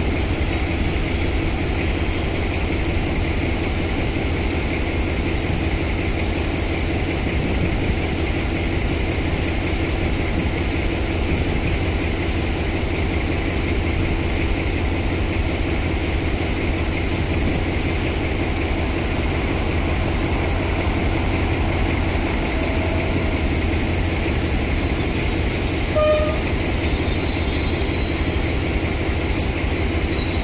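TCDD DE 24000-class diesel-electric locomotive idling with a steady low engine rumble as a passenger train draws near. A brief horn toot sounds late on.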